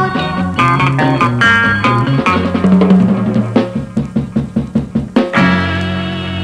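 Instrumental passage of a 1960s Indonesian pop combo with drum kit and guitar, no singing: the band plays, then strikes a run of evenly spaced accented hits about four a second, and a little over five seconds in lands on a held chord that rings on and slowly fades.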